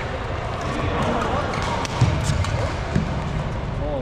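Badminton rally in a large sports hall: sharp racket strikes on the shuttlecock, the loudest about two seconds in, over a steady reverberant din of play and voices.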